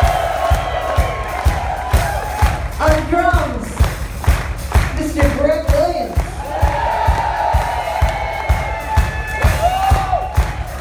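Live rock band playing, a steady drum beat under electric guitars and a lead melody line, recorded from the audience in a hall.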